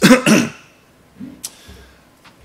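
A man clearing his throat: a short, loud double rasp lasting about half a second, followed by a faint click.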